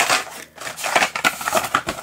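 Plastic blister-pack cards of diecast toy cars being handled: a quick, irregular run of crackles, clicks and light knocks as one carded car is set aside and the next picked up.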